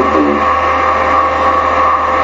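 A loud, steady electrical hum with a constant tone runs under the recording. A man's voice finishes a word at the start.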